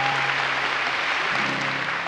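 Audience applauding steadily, with faint music underneath.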